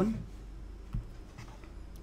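Faint scratching of a stylus on a pen tablet as annotations are drawn, with one soft tap about a second in, over a low steady hum.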